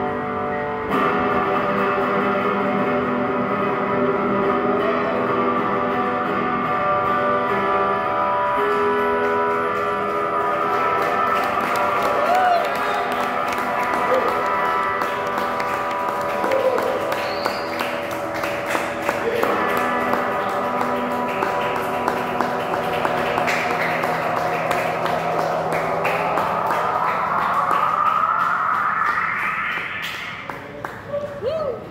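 Cherman electric guitar played through a NUX Loop Core looper pedal: layered, sustained notes and chords repeating as a loop. Over the last few seconds a sound sweeps steadily upward in pitch, and the music cuts off suddenly at the end.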